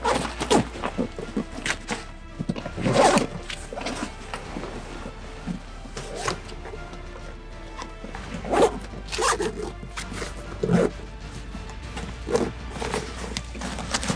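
Zippers and fabric of a backpack being worked by hand: irregular zipping strokes and rustling as a short rifle is packed inside, with louder pulls about three seconds in and again around nine seconds.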